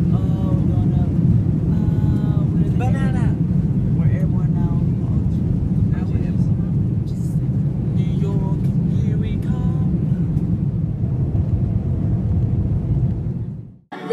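Airliner cabin noise during takeoff: a loud, steady low rumble of the jet engines and the roll down the runway, with voices talking over it now and then. It fades out near the end.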